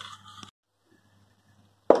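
About half a second of faint kitchen noise, then dead silence at an edit cut, broken near the end by a sharp click as the next shot starts.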